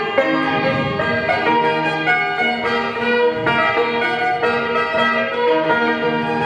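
Live folk dance music from a small band with an electric guitar, playing a melody of held notes that change every half second or so at a steady level.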